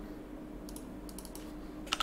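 Soft computer keyboard key presses, a few scattered clicks while text is being edited, faint over a low steady room hum.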